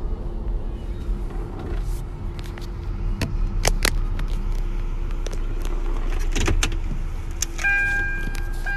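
Inside a parked car with the engine idling: a steady low rumble and hum, with a few sharp clicks and knocks of things being handled in the cabin. Near the end the car's repeating electronic warning chime starts.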